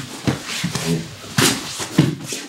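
Wrestlers' bodies shifting and thudding on a wrestling mat as one is rolled over, with a sharp thud about one and a half seconds in and another at the end. Short low vocal sounds come between the impacts.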